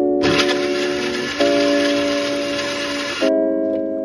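Electric countertop blender running for about three seconds and cutting off abruptly, over background piano music.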